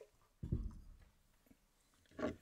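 A single dull, low thump about half a second in, like something knocked or set down in a small space, fading quickly.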